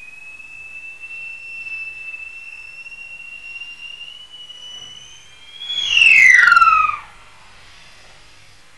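A long, steady whistle-like tone rising slowly in pitch, then about six seconds in a loud, rasping screech sliding steeply down: a bird-of-prey scream sound effect.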